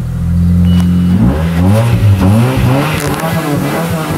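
1996 Nissan 200SX four-cylinder engine idling steadily just after being started, then revved up and down from about a second in.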